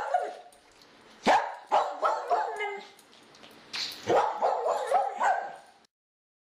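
A dog barking and yipping in short bursts, about a second in, again around two seconds, and in a longer run from about four seconds, cutting off suddenly near the end.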